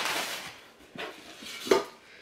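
Tea tins being handled while rummaging in a packing box: a short rustle, then two light knocks, the louder one near the end.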